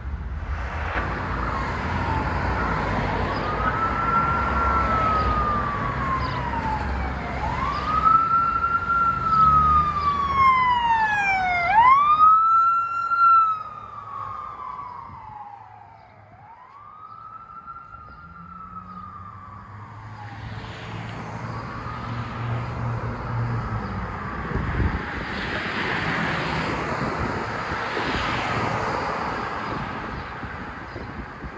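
Police car sirens wailing, each sweep rising and falling over a few seconds, with a second siren sweeping faster over it for a moment about ten seconds in. After a brief lull near the middle, a siren wails again, fainter, over passing road traffic.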